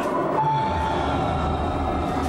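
Simulator ride soundtrack of the ship travelling through the body: a steady low rumble, with a brief held tone about half a second in.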